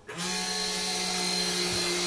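Self-service coffee and hot chocolate machine running, a steady whirring hum with hiss, as it prepares and dispenses a hot chocolate into a paper cup. It starts a moment after the beginning and holds level.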